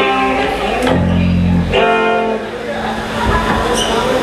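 Live ska band starting a song on electric guitar and bass: a long low bass note about a second in, then a held chord with many stacked tones around two seconds in.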